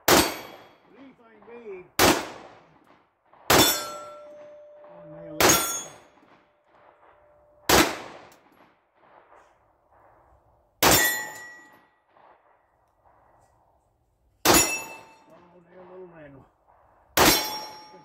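PSA Dagger 9mm compact pistol fired eight times at an uneven pace, one shot every one to three and a half seconds. Several of the shots are followed by a brief metallic ring: a steel plate target being hit.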